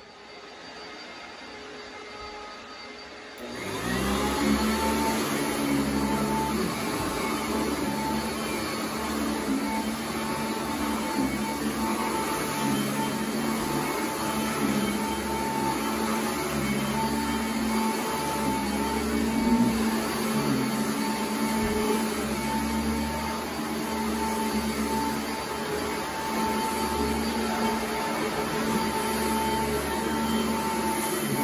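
Upright vacuum cleaner starting about three and a half seconds in, then running steadily with a constant motor whine as it is pushed over carpet.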